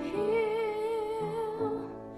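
A woman singing a slow song over a soft accompaniment, holding one long note with a slight vibrato, then moving to a lower note that fades near the end.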